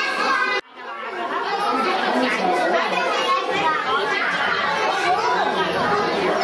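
Many people talking at once, children's and adults' voices overlapping in a hall. About half a second in, the sound cuts out abruptly for a moment and the chatter returns.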